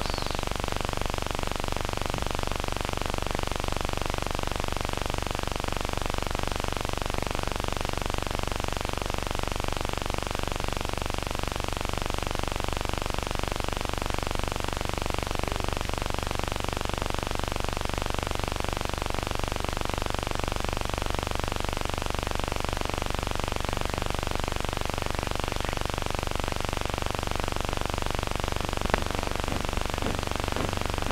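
Steady hiss and static of an old film soundtrack, with no other sound, and a faint click about halfway through and another near the end.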